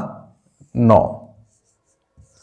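A man says "nau" (nine) in Hindi while a marker draws lines on a whiteboard.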